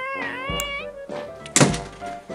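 Background music, with one loud door-shutting thunk about one and a half seconds in.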